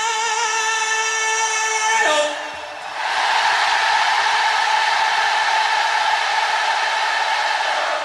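A male singer holds a long sung note with vibrato through a stadium PA, sliding down and stopping about two seconds in. A huge stadium crowd then sings it back as one sustained mass of voices: a vocal call and response between singer and audience.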